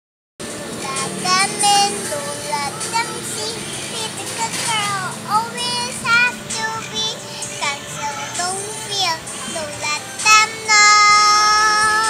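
A young girl singing in a high voice, her pitch sliding up and down through short phrases and ending on a long held note near the end.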